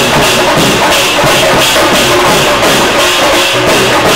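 Dhol-tasha band drumming while marching: big barrel dhol drums and tasha drums beaten together in a loud, fast, steady rhythm.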